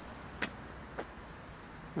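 Faint steady background noise with two short, sharp clicks about half a second apart in the first second.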